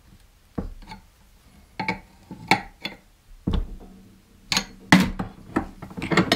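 Steel sway-bar end link parts and a wrench clinking and knocking against each other and the bench vise as the link is taken apart to shorten it: a string of separate sharp metallic clinks, the loudest about five seconds in.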